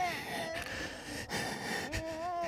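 A man gagged with a ball gag makes a short, falling muffled moan, then breathy, wheezing sounds through the gag.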